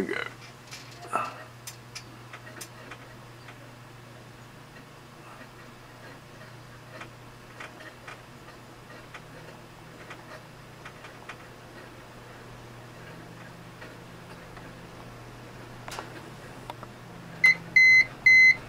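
Steady low electrical hum from the wind-charging setup, with an upper tone that steps up twice as the charge current climbs, and faint scattered ticks. Two short high electronic beeps come near the end.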